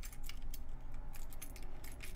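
Light, irregular clicking and jingling of small hard objects being handled.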